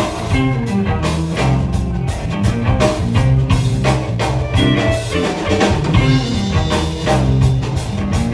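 Live band playing: electric guitar over bass guitar and drum kit, with steady drum hits.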